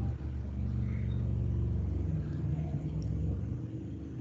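A low engine rumble, steady with a slight shift in pitch partway through, easing off near the end.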